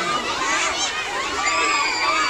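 A crowd of children shouting and shrieking all at once, many excited high-pitched voices overlapping, with one voice holding a long high shriek near the end.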